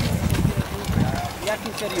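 Indistinct voices talking quietly, with a low rumble on the microphone in the first second that fades away.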